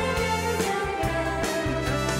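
Band playing the instrumental intro of a Korean trot song, with a steady beat under a sustained melody.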